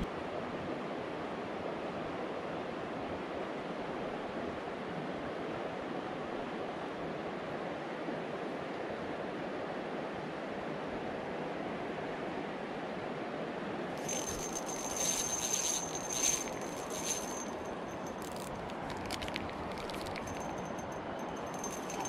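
Steady rush of a flowing stream with a light breeze. In the last third, a spinning reel is cranked in short spells, giving a high whir with quick clicks.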